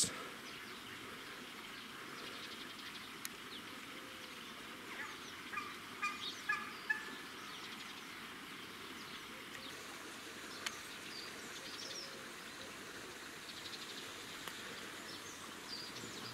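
Indian peafowl (peacock) giving a quick string of short calls about five to seven seconds in, over a quiet outdoor background.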